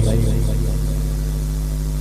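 A steady low hum runs on unchanged through a pause in the talk.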